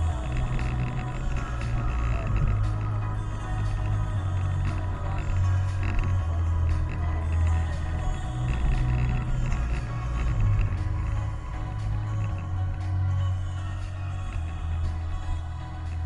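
Music playing through a car's stereo, with a heavy bass line that changes note every second or so over a steady beat.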